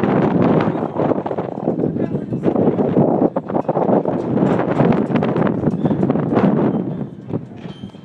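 Strong mountain wind buffeting a phone microphone: a loud, gusty rumble that eases off near the end.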